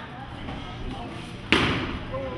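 A single loud smack about one and a half seconds in, dying away quickly with a short echo: a strike landing in a Sanshou sparring bout.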